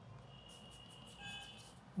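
Faint strokes of a coloured pencil on paper, with a faint high steady tone in the background.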